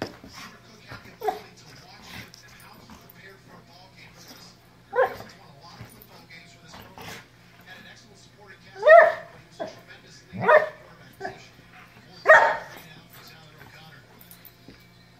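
Golden retriever puppy barking in play: four loud single barks spaced one to four seconds apart, the first about five seconds in, with softer sounds between them.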